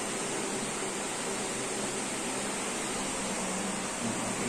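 Steady, even hiss of room background noise, with no distinct events.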